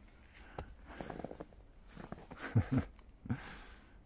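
Faint rustling and soft clicks from handling a camera while moving through the snow, with a few short, low voiced sounds from the man in the second half.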